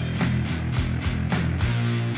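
Doom fuzz rock song playing: heavy fuzz-distorted guitar holding low chords over a steady drum beat.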